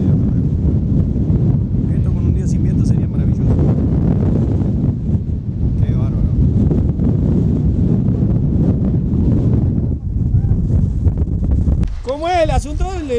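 Strong wind buffeting the microphone: a loud, steady low rumble throughout. Faint distant voices come through it now and then.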